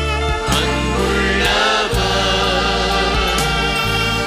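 A choir of women singing a Christian worship song over instrumental backing, with long held low notes and a few sharp percussive strokes.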